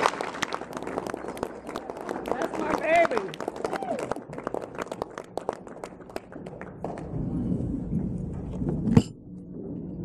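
Audience applause with a brief whoop, right after a live song ends; the clapping thins out over several seconds. Low crowd murmur follows, with one sharp knock near the end.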